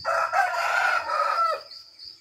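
A rooster crowing once, a single loud call of about a second and a half, over a steady chirping of crickets.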